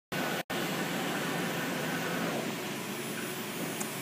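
Esko Kongsberg MultiCUT flatbed cutting table running with a steady rushing hum from its vacuum hold-down blower, with a brief cut-out about half a second in.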